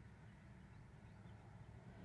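Near silence: a faint, steady low rumble, the room tone inside a parked car.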